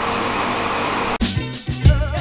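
A steady machine hum like a fan or air conditioner for about a second, then background music with a beat cuts in suddenly.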